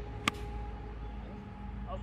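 A golf iron striking the ball off the tee: one sharp, short click about a quarter of a second in, over a steady low rumble.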